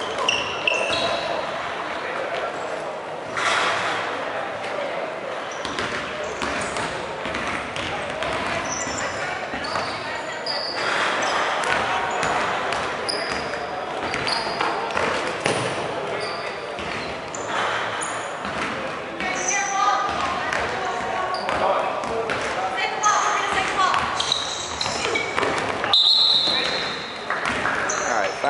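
Dodgeball game in a large gym hall: balls thrown and bouncing on the wooden floor, with players' voices calling out indistinctly, all echoing in the hall.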